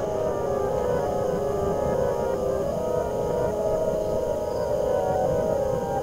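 Dark ambient drone: a low, steady hum of held tones that shift slowly in pitch, as in a horror film's underscore.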